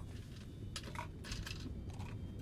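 Steady low airliner cabin hum, with a few light clicks and rustles from a briefcase being lifted and carried.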